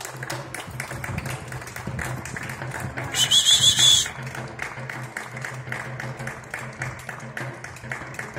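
Scattered clapping from listeners at the end of a recited poem, with a loud trilling whistle about three seconds in that lasts about a second.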